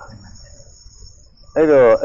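A man's voice pauses, leaving only a faint steady high-pitched trill in the background, then resumes speaking loudly about one and a half seconds in.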